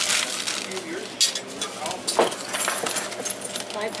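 A few light clinks and knocks of small hard objects being handled, the clearest about a second in and again about two seconds in.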